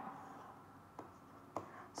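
Faint stylus taps and strokes on a tablet screen while writing, with two soft ticks about a second in and near the end, over quiet room tone.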